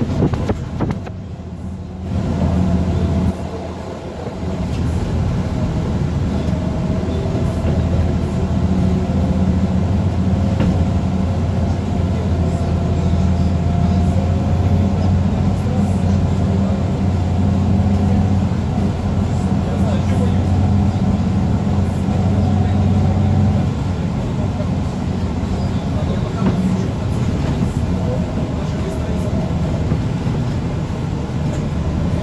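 A vehicle's engine drones steadily, heard from inside the cabin while driving. It dips briefly near the start and eases slightly about three quarters of the way through.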